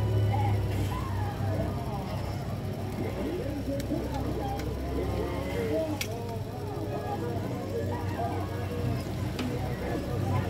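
Indistinct background voices over a steady low rumble, with a few light clicks from phone parts being handled, the sharpest about six seconds in.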